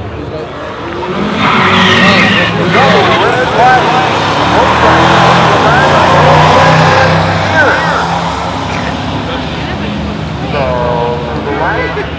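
Turbocharged Honda Civic EK hatchback making a drag-strip pass. Its engine noise swells about a second in and stays loud for several seconds. Spectators shout and cheer over it.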